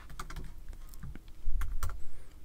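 Computer keyboard keystrokes: a few scattered key clicks, then a quicker, louder run of keystrokes near the end.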